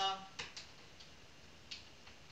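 A few light, sharp clicks of a drill pen tapping on the resin drills of a finished diamond painting: one clear click about half a second in, a couple of fainter ones, and another near the end.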